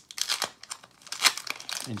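Foil Pokémon booster pack wrapper crinkling and crackling as it is handled right next to the microphone, in a run of irregular sharp crackles, loudest a little past a second in.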